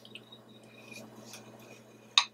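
A metal spoon stirring a thick, lumpy paste of gram flour, turmeric and coconut oil in a small glass bowl. The scraping is faint, with a few light taps of the spoon against the glass.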